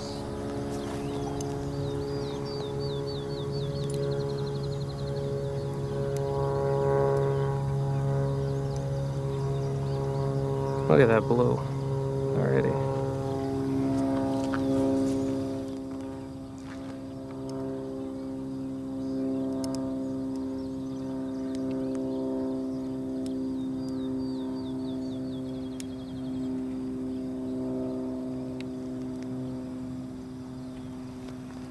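A distant propeller airplane droning steadily, its held tones shifting slightly near the middle. Bird chirps come in short quick runs early and late, and two loud swooping calls come about eleven and twelve seconds in.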